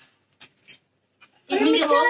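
A few faint light clicks, then a person's voice talking loudly from about one and a half seconds in.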